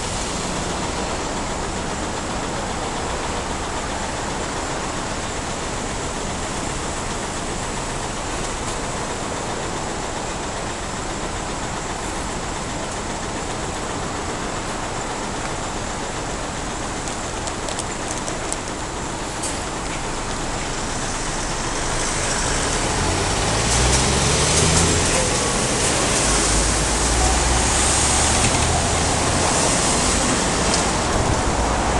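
Steady city road-traffic noise that grows louder about two-thirds of the way through as vehicles pull away, one engine rising in pitch as it accelerates.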